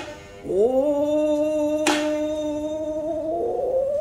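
Gidayū-bushi chanting by a female tayū: her voice glides up into one long held note about half a second in and wavers near the end, with a single sharp stroke of the futozao shamisen about two seconds in.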